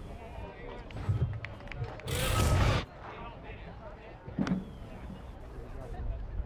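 Ballpark ambience under a broadcast, with faint voices in the background. About two seconds in comes a loud rushing noise lasting under a second.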